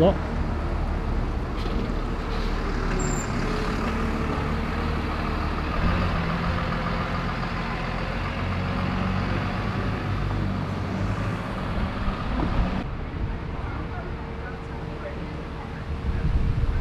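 Single-deck diesel bus pulling away from the stop and driving off, its engine note stepping up about six seconds in as it accelerates. Near the end the sound changes to a quieter, steady engine: a double-deck bus idling at the kerb.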